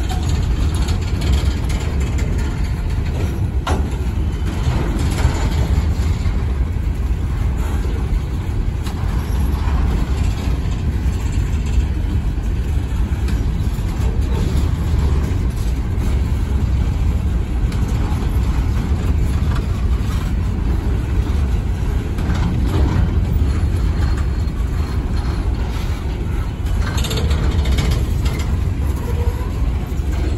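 Empty coal hopper cars of a freight train rolling past close by: a steady low rumble of steel wheels on rail, with scattered clanks and metallic squeaks.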